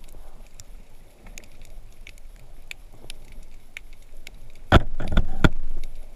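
Underwater ambience picked up by a camera in its waterproof housing: a low murmur with faint, scattered clicks. Near the end come a few loud knocks with a short rush of noise, lasting about a second.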